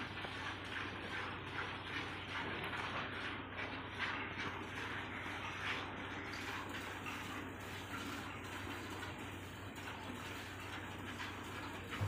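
Cow being hand-milked: rapid, rhythmic squirts of milk streaming into a plastic bucket, a steady run of short strokes from both milkers' hands.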